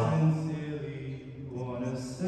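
A cappella vocal group singing a held chord that fades away over the first second or so, leaving quiet, sustained voices.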